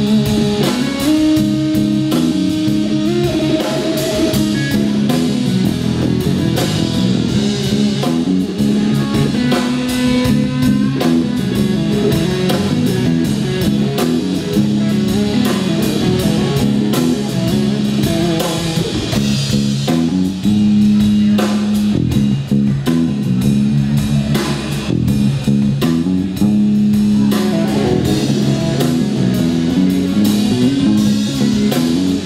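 Live electric trio playing: a Telecaster-style semi-hollow electric guitar over electric bass and a drum kit, without a break.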